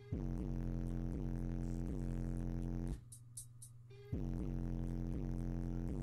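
A car audio system playing a bass-heavy song through Skar Audio 12-inch subwoofers, heard in the car's trunk: a steady deep bass line with repeated notes. The music stops for about a second near the middle, then comes back.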